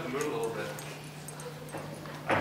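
A short pitched vocal sound from a person in the first half-second, then quiet room sound over a steady low hum.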